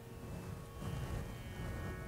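A soft, steady drone of several sustained pitches, the continuous tonic drone under a Carnatic music ensemble, with faint low rustles in between.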